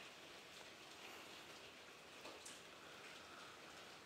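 Near silence: faint, steady room hiss.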